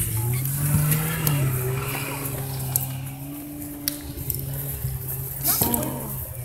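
A motor running steadily with a low hum, its pitch rising slightly about a second in and then holding, with a few faint clicks over it.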